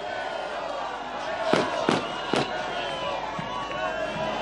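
Three sharp firecracker bangs in quick succession, about a second and a half in, over the steady noise of a large outdoor crowd.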